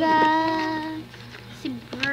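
A girl's voice holding one long sung note for about a second, then a short vocal sound near the end.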